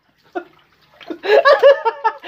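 Men laughing hard: a short burst, a brief pause, then loud, choppy laughter about a second in.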